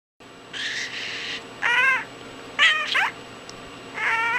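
A raspy, hissing sound, then a cat meowing twice in short calls about a second and a half and two and a half seconds in. The second meow falls in pitch.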